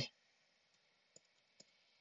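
Two faint computer keyboard key clicks about half a second apart as digits are typed, otherwise near silence.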